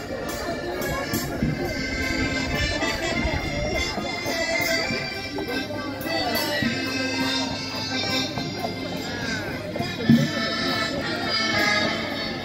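Live accordion playing folk dance music, with people talking over it.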